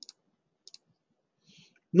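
Computer mouse clicks: a couple of short, light clicks about two-thirds of a second apart, as dialog-box buttons are clicked.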